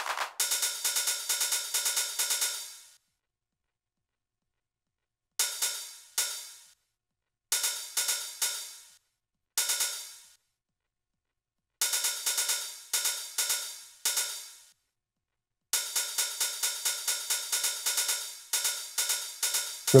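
Electronic drum loop in Bitwig Studio, played from a Novation Launchpad Pro: bright hi-hat-like ticks at a few a second, with no kick or bass. The loop plays in short runs that stop dead and restart as the clip's loop length is switched.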